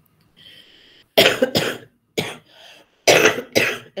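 A person coughing about five times in quick succession, starting about a second in, in two clusters.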